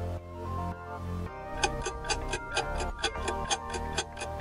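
Background music with a quiz countdown timer's clock-tick sound effect. The ticking starts about a second and a half in and runs at about five ticks a second.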